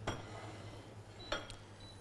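A wooden spatula stirring garlic in melted butter in a small stainless steel saucepan, knocking against the pan with a light clink at the start and again just over a second later.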